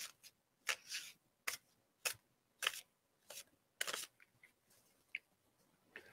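Antique Anatomy tarot deck being shuffled by hand: faint, soft swishes of cards sliding against each other, about one every half second.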